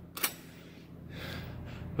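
A single short, sharp click about a quarter of a second in, then a quiet pause over a low steady background hum, with a faint intake of breath near the end.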